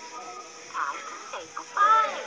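Children's TV soundtrack heard through a television speaker and filmed off the screen: music with short squeaky, bending animal-like vocal noises from the puppet characters, the loudest one near the end.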